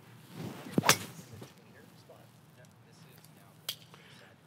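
A golf driver swing with a Titleist TSR3 driver: a rising whoosh of the club through the air, then a sharp crack as the titanium clubhead strikes the ball off the tee, a little under a second in. A brief click follows near the end.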